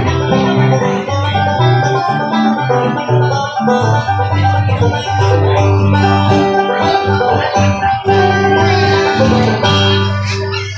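Acoustic guitar and banjo played together live in a bluegrass instrumental, the banjo picking a fast melody over the guitar's rhythm.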